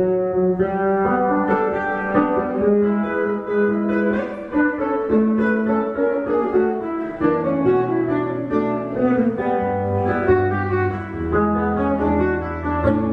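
Guitar plugged into an amplifier, playing an instrumental passage with no singing: a melody of shifting notes over held low bass notes.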